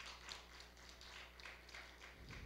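Faint, scattered hand claps from a small congregation, a few irregular claps a second, thinning out.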